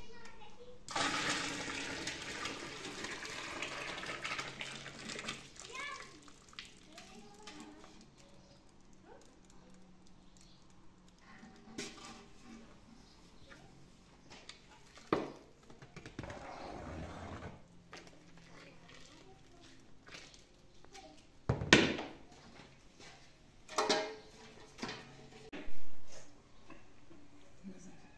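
Milk poured from an aluminium pot into a larger pot, a splashing pour of a few seconds. Later come light scrapes and a few sharp knocks of metal pots and a ladle.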